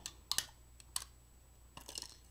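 Snips clipping out a small plastic catch from a toy blaster's moulded plastic body: a few sharp clicks, two close together near the start and one about a second in.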